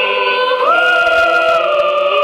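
A mixed choir of men's and women's voices singing long held chords, stepping up to a higher chord just over half a second in.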